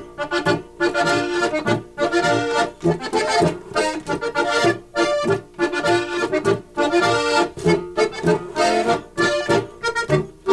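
Two diatonic button accordions playing a polka française duet in Austrian folk style, melody over chords pulsing on a regular beat.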